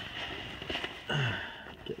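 Faint rustling and handling noise from work at a tractor's three-point hitch linkage, with a short vocal sound falling in pitch about a second in.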